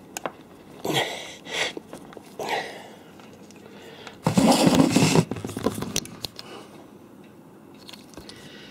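Handling noise from a plastic power-cord connector and its red and black leads being worked against the back of a mobile radio and dragged on a wooden desk: short scrapes and rubs with a few small clicks, and a louder, longer scrape about four seconds in.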